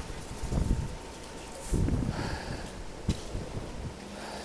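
Strong cyclone wind gusting against the microphone in irregular low rumbling buffets, strongest about half a second in and around two seconds in. A single sharp click about three seconds in.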